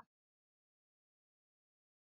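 Near silence: the audio is cut to nothing between the presenter's remarks.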